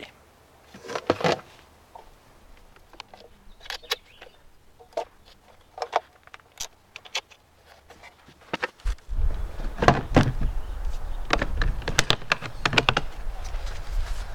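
Small clicks, taps and knocks of wiring and a solar charge controller being handled and connected to the terminals of two 6-volt batteries wired in series. About nine seconds in, the sound gets louder, with rustling, a low rumble and more frequent knocks.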